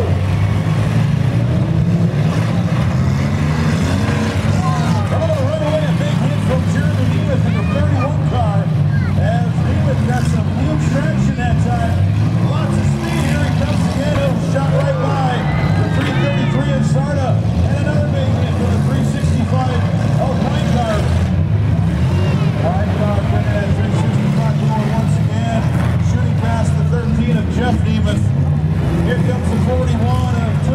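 Several demolition derby compact cars' engines running and revving hard as the cars drive and ram each other on a muddy dirt track, with crowd voices shouting over the engine noise.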